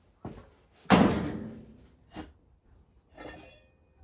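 A single loud heavy clunk about a second in, ringing away over about a second, as metal parts knock together during removal of a classic Mini's engine from its subframe. It is followed by a lighter knock and a brief scrape.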